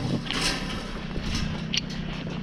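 Steel farm gate being opened by hand, a few faint clicks and rattles over a steady low rumble.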